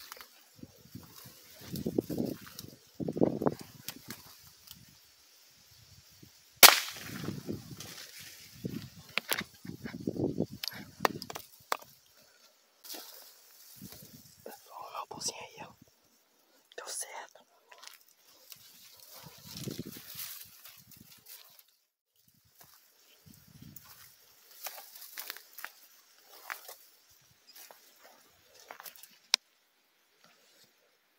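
Rustling and handling noises of a hunter moving through dry brush and handling a shot bird, with one sharp crack about six or seven seconds in and a short click near the end.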